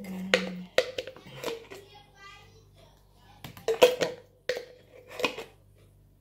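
A metal spoon knocking against a mixing bowl, tapping coconut oil off into it, each knock with a short ring; a few knocks near the start and a quicker run of them from about three and a half seconds in.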